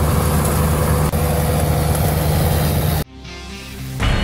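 ASV RT-120 compact track loader with a rotary brush-cutter attachment, running loud and steady: a dense machine noise over a low engine hum. It cuts off suddenly about three seconds in, giving way to a short musical sting.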